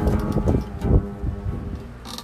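Oud playing broken up by knocks and rumbling handling noise on the phone's microphone, loudest in the first second. It turns quieter in the second half.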